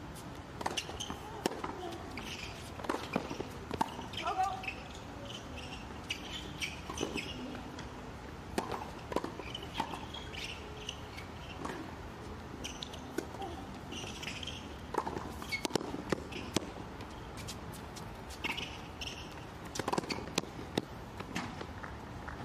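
Tennis balls struck by rackets and bouncing on a hard court during a doubles rally: repeated sharp, irregular hits, with voices between the shots.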